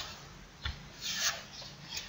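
A few short, faint rustling sounds, about three of them, with no voice.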